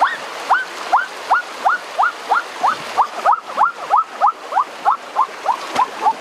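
An animal's chirping call, a short note that rises sharply in pitch, repeated steadily about three to four times a second and growing a little quicker and lower near the end, over the steady rush of a stream.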